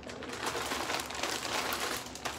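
Thin plastic mailer bag crinkling and rustling as it is handled and a garment is pulled out of it, a continuous crackle with many small crackles.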